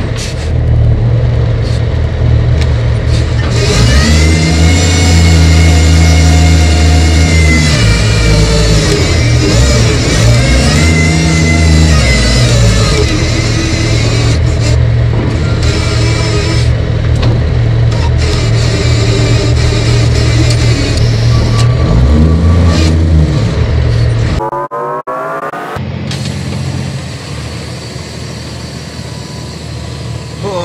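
Heavy diesel engine running loud and revving up and down several times as it works; the sound drops off sharply about 25 seconds in and runs on quieter.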